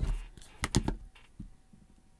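A few quick, light clicks and taps as a phone is handled and set down on a wireless charging stand.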